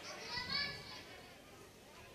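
Faint children's voices in the background for about the first second, then near quiet.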